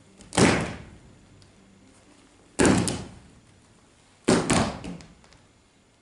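Three loud thuds about two seconds apart, each with a short echo; the last is ragged, several hits landing close together. They are a group of actors stomping in unison on a stage floor.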